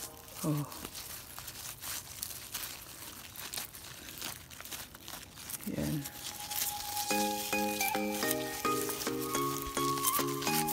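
Crackling and rustling of fingers rubbing a drying sunflower head and its seeds. Instrumental background music with a steady stepping melody comes in about seven seconds in.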